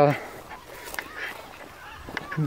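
Faint distant bird calls over a quiet outdoor background, just after a man's voice trails off, with a small click about a second in.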